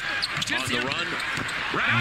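Basketball game broadcast sound: a basketball bouncing on the hardwood court as it is dribbled, with the play-by-play commentator talking quietly under it.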